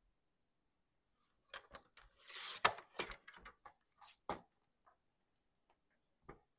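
A magazine page sliding and rustling across a plastic paper trimmer, with a run of sharp plastic clicks and knocks from the trimmer's clear cutting arm being moved. It starts about a second and a half in and lasts about three seconds.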